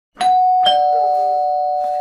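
Two-tone doorbell chime rung by a push button: a higher "ding" then a lower "dong" about half a second later, both notes ringing on and slowly fading.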